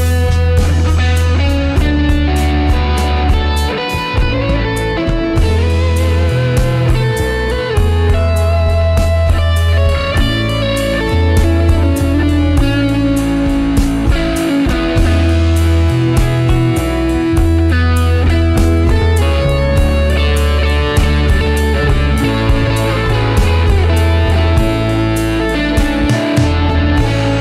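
Recorded band track with an electric guitar solo on a Harmony Rocket hollowbody, clean tone, over bass and a steady drum beat.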